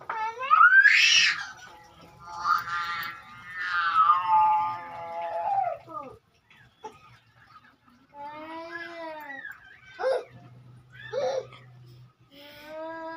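A small child's voice crying out in long, wavering wails, with a high squeal about a second in and two short cries near the end.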